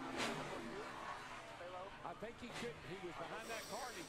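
Faint onboard audio from a NASCAR stock car during a crash, with a faint voice over it.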